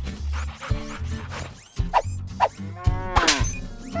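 A cow mooing, with one long call that rises and falls in pitch about three seconds in, over light background music.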